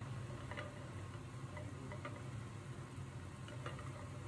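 Chicken of the woods mushroom pieces frying in a pan, with scattered crackles and pops a few times a second over a steady low hum.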